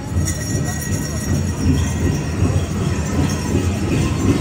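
A powwow drum group drumming and singing, heard as a dense, echoing mix in a large arena, with heavy low drum energy.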